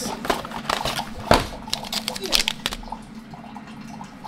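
Paper tea packets and a cardboard tea box being handled and set down on a wooden counter: a run of rustles and light taps with one sharper knock about a second in, over a low steady hum.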